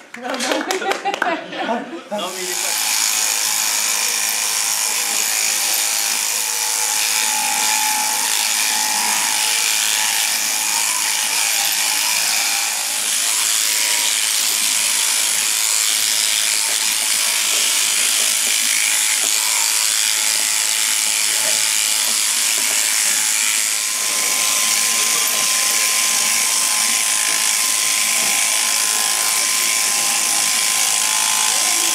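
Electric shearing handpiece, driven through a flexible shaft from an overhanging motor, running steadily as its cutter clips mohair fleece from an Angora goat. It starts about two seconds in.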